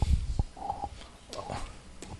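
Chalk on a blackboard: a few short soft knocks near the start, then faint scraping as a figure is written.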